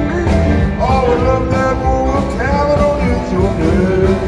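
Live blues band playing a boogie-woogie number: electric guitar with long held lead notes that slide in pitch, over a steady bass-and-drums groove.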